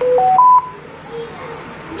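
Walkie-talkie power-on tone: three short electronic beeps stepping up in pitch, all within about half a second.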